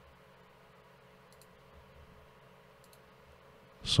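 Faint computer mouse clicks, two quick pairs about a second and a half apart, over quiet room tone with a steady low hum; a man's voice starts right at the end.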